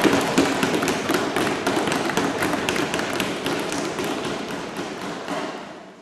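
Applause from many people: dense, overlapping hand clapping that slowly dies away toward the end.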